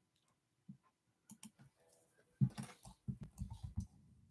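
Faint, scattered clicking and soft knocks of a computer keyboard and mouse being worked, sparse at first and bunched together in the second half.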